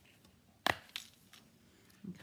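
One sharp clack about two-thirds of a second in, with a couple of faint taps after it: a clear plastic stamp case being picked up and handled on the craft mat.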